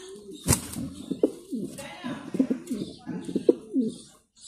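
Male Mundian pigeon cooing, a run of short low coos one after another, with a sharp knock about half a second in.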